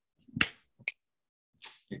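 Two sharp finger snaps about half a second apart, then a short breathy noise near the end.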